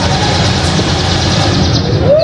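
Loud, steady low rumble with an engine-like character filling the hall; it drops away near the end.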